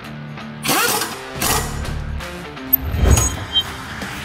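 Background music over a pneumatic impact wrench spinning up with a rising whir on a brake caliper bolt, followed by a cluster of sharp metallic ratcheting clicks near the end.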